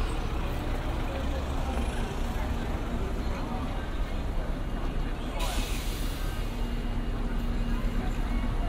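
Busy city street ambience: road traffic running past with passersby talking. About five seconds in, a sudden hiss of air cuts in and fades away.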